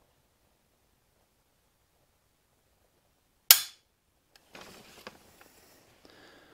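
Barrett MRAD's two-stage trigger breaking under a trigger pull gauge: a single sharp dry-fire click about three and a half seconds in, at a pull of about three pounds two ounces. Faint handling rustle follows.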